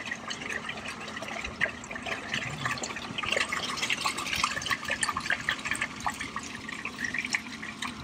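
RV black-tank waste water gurgling and trickling through a corrugated sewer hose, with many small pops, as the hose is squeezed along its length to help the flow.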